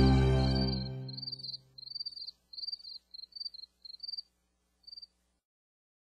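A song fades out. Then short, high-pitched insect chirps, as of a cricket, repeat in brief bursts, often in pairs, until the sound cuts off about five seconds in.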